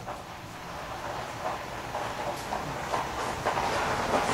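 Irregular scuffing, scraping and light knocks from someone working at a garage window and clambering through it, growing louder.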